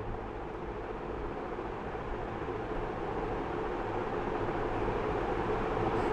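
Steady background hum and hiss with no distinct events, slowly growing louder across the few seconds.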